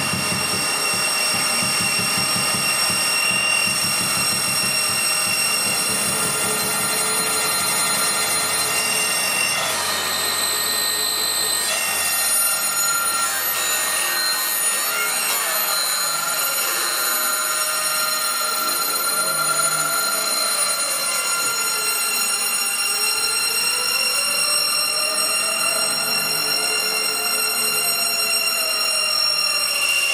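Electronic improvised music from modular synthesizers: a dense bed of many sustained high tones over a low drone, with a burst of hiss about ten seconds in. In the second half, slow pitch sweeps rise and fall while the drone drops out and then comes back.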